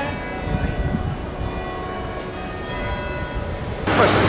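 Church bells ringing, their notes hanging on in the air over low street noise; the sound cuts off abruptly near the end.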